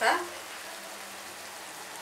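Chopped tomatoes and onions sizzling steadily in butter in a frying pan.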